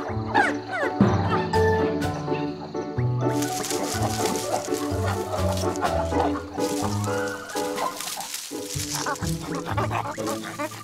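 Cartoon background music with a bouncy bass line and melody, with short, high animal calls laid over it near the start and again near the end.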